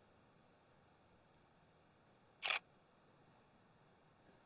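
Nikon D5600 DSLR taking a single shot about two and a half seconds in: one short, sharp shutter and mirror clack, heard as a quick double click.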